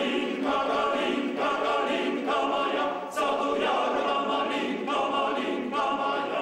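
Polish male choir singing a cappella in several parts, holding chords that change every second or so, with a short break about three seconds in.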